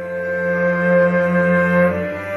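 Live prog rock band with a string orchestra playing an instrumental passage of long held chords, moving to a new chord near the end.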